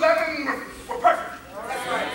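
A man preaching in a raised, high-pitched voice.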